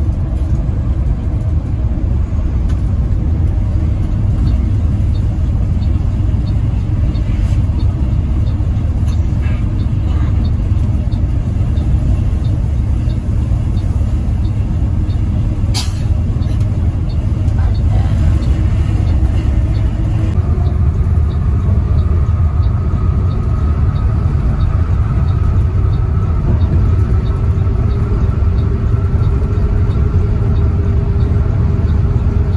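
Steady low rumble of a bus's engine and road noise, heard from inside the cab while cruising on a highway. A faint regular ticking runs through the first two-thirds, there is a single sharp click about sixteen seconds in, and from about twenty seconds a whine slowly rises in pitch.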